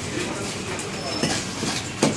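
A knife scraping scales off a fish in repeated quick strokes, a steady rasping with faint voices behind it.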